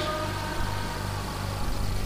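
Low, steady drone of sustained keyboard music through the PA, with the faint hiss of a large hall's ambience.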